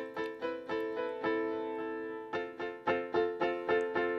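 GarageBand's Classical Grand software piano playing a line of notes with the master echo turned up high, so each note is repeated as a delay. It is more echo than you would normally use.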